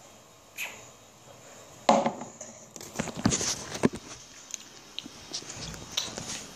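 A string of knocks and clicks from the camera being handled and moved close up. The loudest knock comes about two seconds in, and several quicker taps follow from about three seconds on.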